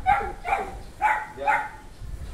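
Golden retriever barking: four short barks in two pairs.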